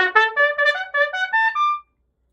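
Vincent Bach Artisan AP-190 piccolo trumpet playing a quick run of short, separated notes, about five a second, climbing in pitch to a high final note that stops sharply near the end.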